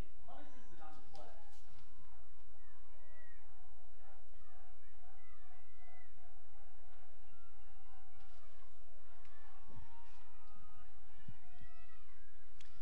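Scattered shouts and talk from lacrosse players and sideline spectators after a goal, over a steady low hum.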